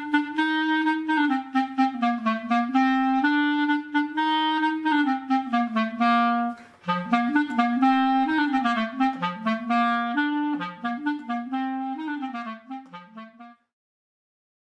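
Solo clarinet playing a simple melody, one note at a time, with a short pause about seven seconds in. The tune cuts off shortly before the end.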